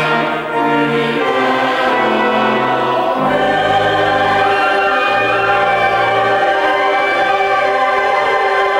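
Mixed choir of men and women singing slow, sustained chords, the notes changing about once a second, with a deeper held part coming in about three seconds in.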